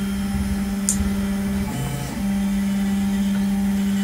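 Stepper motors of a large H-bot 3D printer whine steadily as they drive the print head. The tone changes briefly about halfway through, then settles back.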